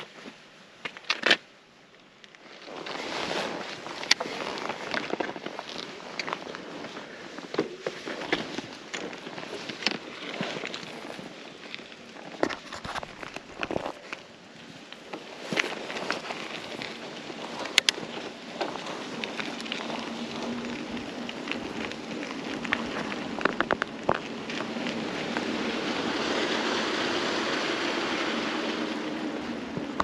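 Mountain bike ridden on a rough, gritty road: steady tyre-rolling noise with frequent clicks and rattles from the bike and loose grit, starting a couple of seconds in and growing louder near the end as it picks up speed.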